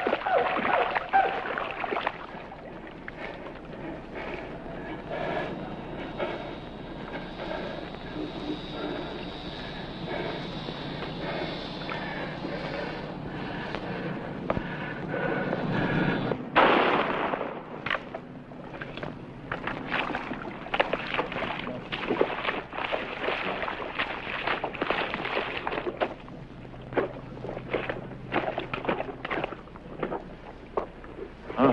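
Splashing and thrashing in shallow swamp water, then a single sharp rifle shot about halfway through, followed by irregular splashing of someone wading through water.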